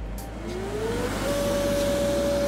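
Small electric air blower for an inflatable mechanical-bull arena switching on: its motor whine rises in pitch through the first second as it spins up to speed, then settles into a steady whine with a rush of air.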